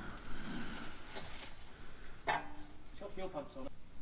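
Mostly quiet, with a man's voice speaking faintly and off-mic from a little past halfway through.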